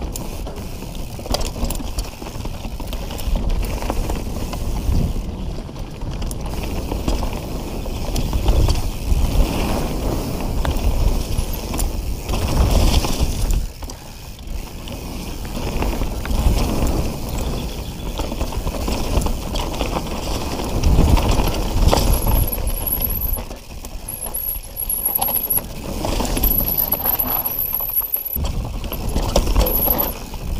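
Mountain bike rolling fast down a dirt trail covered in dry leaves: tyres on leaves and dirt, with the bike's parts rattling and knocking over bumps and a steady low rumble. A faint high whine comes and goes in the last several seconds.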